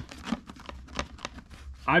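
A hand pressing and rubbing an HJC i50 motocross helmet and its visor down inside a fabric gear bag: scattered light rustles and small plastic clicks, with a low hum underneath.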